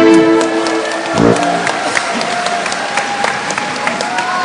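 The end of a live song: the band's last chord dies away, with one short low hit about a second in. A large crowd then applauds.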